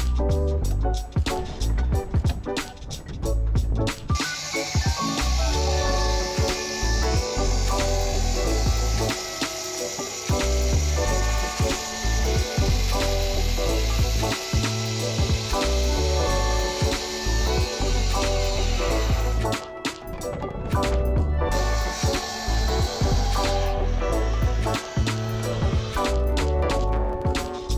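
Background music with a steady beat throughout. For most of the middle, a large Makita circular saw is heard under the music, crosscutting a Douglas fir beam.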